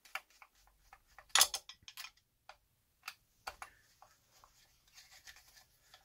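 A hex driver turning a small screw out of the plastic spur-gear cover of an RC truck: scattered light clicks and scrapes, the loudest about a second and a half in.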